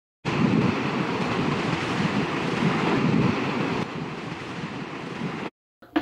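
A steady rushing noise that drops in level about four seconds in and cuts off abruptly shortly before the end.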